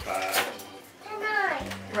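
A child's voice speaking in short bursts, with one sharp click a little under half a second in.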